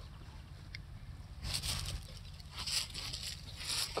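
Irregular rustling and scuffing close to the microphone over a low rumble, starting about a second and a half in: a padded jacket brushing against the filming phone.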